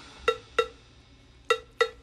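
Sparse percussion break in a dance track: four short pitched percussion hits in two pairs, with the bass, drums and vocals dropped out.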